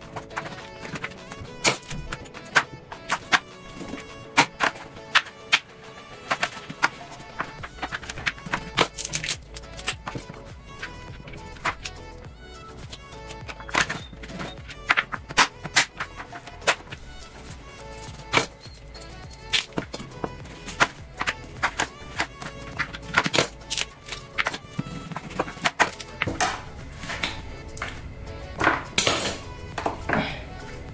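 Background music, with irregular sharp knocks of a kitchen knife chopping through a raw chicken onto a plastic cutting board, coming in a quicker flurry near the end.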